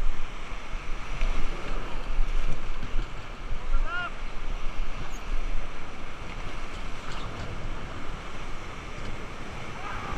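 Steady roar of the Horseshoe Falls waterfall, a loud, even rush of falling water, with wind on the microphone.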